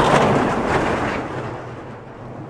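Bobsled rushing past on an ice track's curve: the runners on the ice make a loud rumbling rush that is loudest at the start and fades away over about two seconds as the sled goes by.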